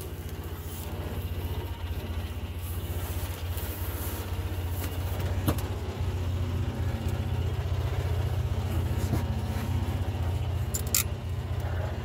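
Polaris side-by-side utility vehicle's engine running steadily with an even low pulsing note. A few short, sharp clicks and rattles sound over it.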